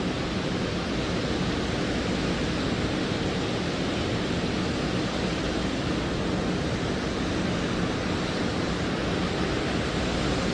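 Steady, even rushing noise on the launch-pad microphone feed, unchanging throughout.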